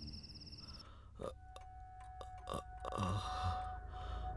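Quiet tense film sound design: a low rumble and a steady held tone set in about a second in, with scattered sharp clicks and ticks.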